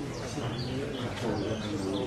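A dove cooing and small birds chirping, over a low murmur of voices.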